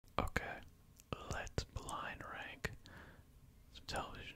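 A man whispering close into a microphone, with several sharp clicks between his words.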